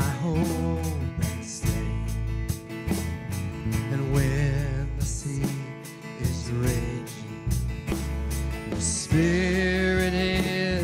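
Live worship band playing a song: drum kit, electric bass guitar and guitar, with a voice singing over them and holding a long note from about nine seconds in.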